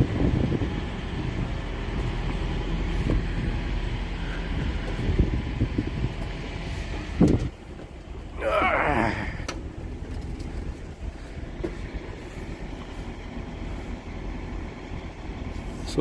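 Steady low rumble of a diesel truck engine idling, which drops away about halfway through, with a short voice-like sound just after; a quieter low background follows.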